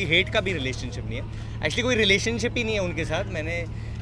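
A man talking, with a steady low hum underneath.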